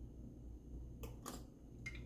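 Faint mouth and mug sounds of someone sipping hot chocolate from a mug: three short soft clicks, two close together about a second in and one near the end.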